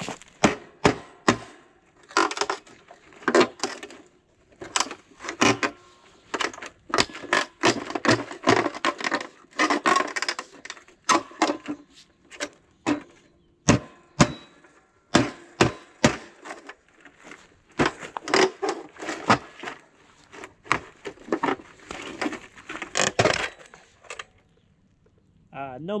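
Hatchet blows knocking and cracking against a locked ATM cash box, many strikes in quick runs with short pauses, breaking it open. The strikes stop a second or two before the end.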